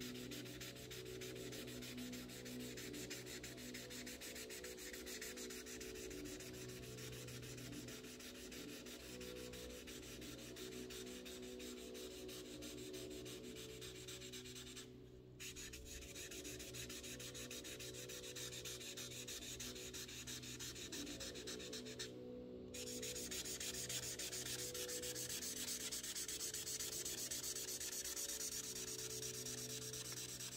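Felt tip of an Imagine Ink mess-free marker rubbing across coloring-book paper as areas are filled in, a faint steady scratchy sound that breaks off briefly twice. A steady low hum runs underneath.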